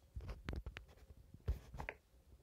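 A few soft, irregularly spaced thumps and scratchy scrapes close to the microphone, about five in two seconds.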